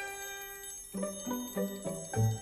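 Music accompaniment to a silent film: a ringing note held for about a second, then a quick series of short, separate notes.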